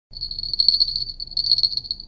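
Small clip-on fishing-rod bells jingling in a steady, high, shimmering ring, with a brief lull just after a second in.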